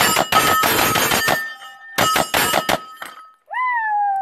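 Rapid pistol fire on hanging AR500 steel plates, each hit ringing: one fast string of shots, then a shorter string about two seconds in. Near the end comes a single whoop that jumps up in pitch and slowly falls.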